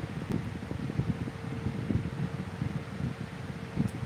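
Low, uneven crackly rustling close to the microphone, with a faint steady hum underneath.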